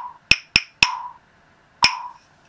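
Sharp wooden knocks from a mallet tapping out a rhythm at 60 beats per minute, each with a short ringing tail: three quick knocks about a quarter beat apart, then one a full beat later. They mark the syllables 'writ-ing mu-sic' in their note lengths.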